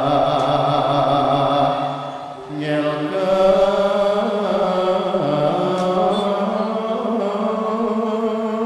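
Javanese male singing into a microphone with the gamelan players, long drawn-out held notes in a chant-like style. The voice breaks off briefly about two and a half seconds in, then the singing resumes.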